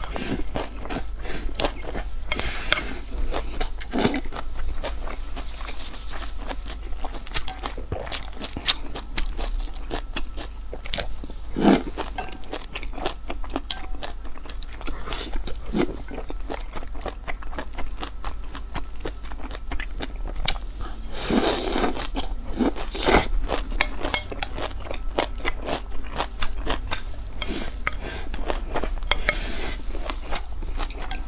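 Close-miked eating sounds: a person chewing and biting food, with many small wet clicks and crackles and a few louder mouth sounds along the way.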